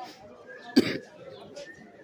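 A single short cough close to the microphone about a second in, over faint background voices.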